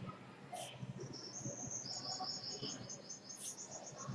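High-pitched chirping trill, a run of short, evenly spaced pulses that starts about a second in and stops shortly before the end. Two brief scratchy hisses come about half a second in and again near the end.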